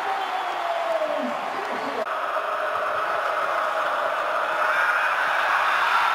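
Large football stadium crowd cheering a home-team touchdown, a dense, steady din of many voices. There is an abrupt edit about two seconds in, after which the crowd noise carries on and swells slightly toward the end.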